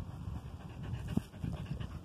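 Dog panting in quick, even breaths close to the microphone, with a single knock about a second in.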